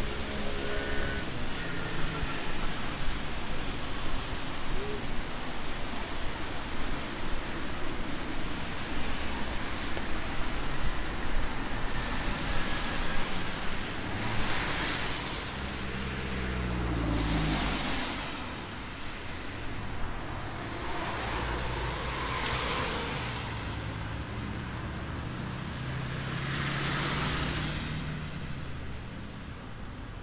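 Street traffic on a wet road: a steady rush of noise, then about halfway through cars pass one after another, each tyre hiss swelling and fading with a low engine hum, about four passes in all.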